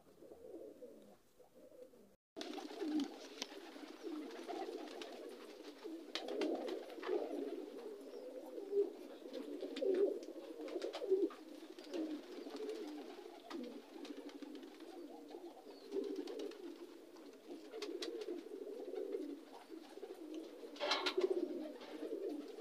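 Domestic pigeons cooing: overlapping low, wavering coos that go on without a break, starting suddenly about two seconds in after near silence.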